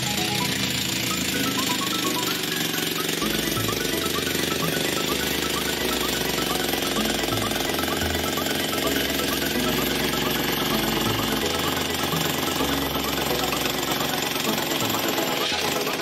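A handheld electric demolition hammer running continuously, chipping into a coal face. Background music with a beat plays underneath.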